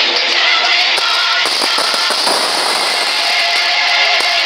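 Orchestral film-score music with a cluster of drum hits in the middle, played from a television.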